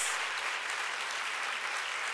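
Audience applauding: steady clapping from a seated crowd, softer than the speech around it.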